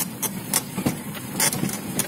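Vehicle driving over a rough dirt track, heard from inside the cab: the engine runs steadily under a stream of rattles and knocks as the body jolts over the bumps.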